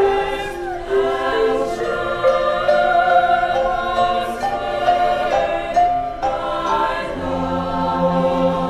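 Chamber choir singing sustained chords that shift every second or so. A low note enters about seven seconds in.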